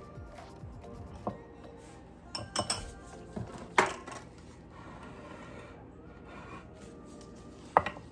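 Wire whisk stirring a dry spice rub in a small bowl, with a few light clinks and knocks of metal on the bowl, the loudest about four seconds in and another sharp one near the end.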